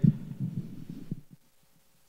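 A pause in a man's speech: the echo of his voice fades out in a large church, with a few faint low knocks, then near silence.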